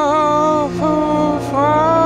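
A single voice chanting a mantra in long held, slightly wavering notes, with a brief break about two-thirds of a second in, over a low steady drone.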